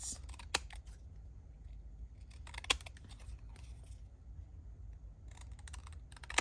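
Scissors snipping through the edge of a small photo print, a handful of short, sharp, separate cuts spread across the moment, the sharpest about half a second and two and a half seconds in.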